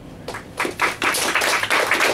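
A small group of people applauding with hand claps, starting about half a second in and quickly building to steady clapping.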